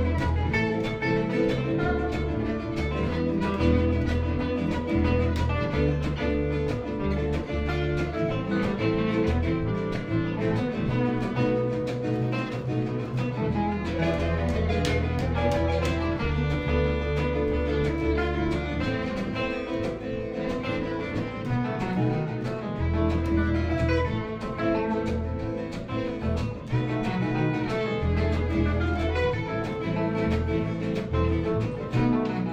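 Live gypsy-jazz string quartet playing: violin bowing over two acoustic guitars and a plucked upright bass, with a steady low bass line under the guitars and violin.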